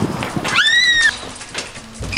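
A child's high-pitched shriek, one cry about half a second long that rises sharply and then sags, about half a second in, after a burst of scuffling noise from the children running up.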